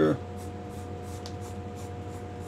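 Pencil sketching on paper: faint, short graphite strokes over a steady low hum.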